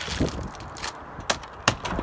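Short knocks and clicks of a wooden form board being handled and worked loose from a filled rafter tail: a soft tap near the start, then two sharp knocks close together in the second half.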